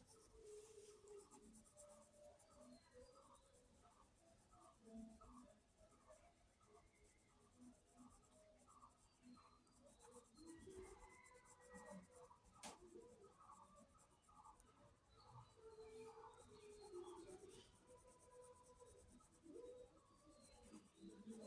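Faint scratching of a pencil on paper in short repeated strokes, about two a second, as it goes over the lines of a drawing.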